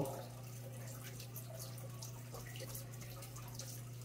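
Quiet room tone: a steady low hum, with a few faint light touches of a finger and a paper card being handled.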